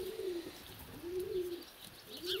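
A pigeon cooing: two low, arching coos, one right at the start and another about a second in.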